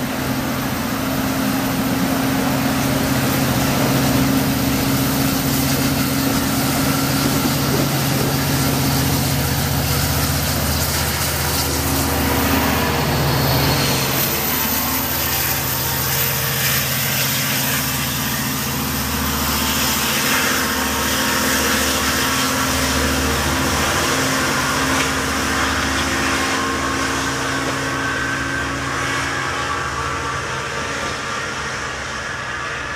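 LIRR DM30AC dual-mode locomotive running on its diesel engine as an eight-car bi-level train departs, passing close and then pulling away, with the rumble of the cars rolling on the rails. The engine's steady tones change about halfway through as the rear locomotive goes by.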